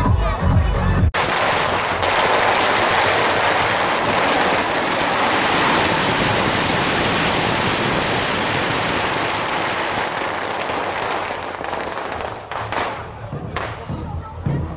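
Music with a heavy beat cuts off about a second in, giving way to a long, continuous barrage of firecrackers burning in a heap on the ground: a dense crackle that thins out and breaks up near the end.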